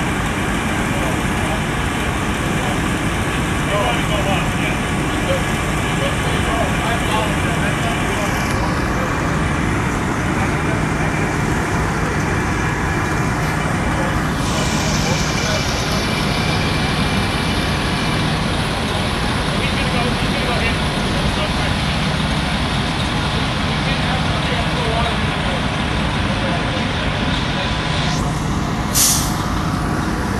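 Fire apparatus engines running steadily at a fire scene, a constant low drone with a steady hum, with voices talking faintly underneath. A brief hiss comes near the end.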